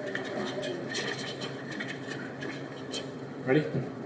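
Faint background chatter of several voices talking, with a voice saying "Ready?" near the end.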